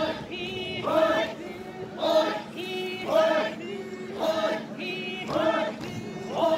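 Chakhesang Naga folk dancers chanting in unison: a short group call about once a second, with higher voices wavering in between, in a steady dance rhythm.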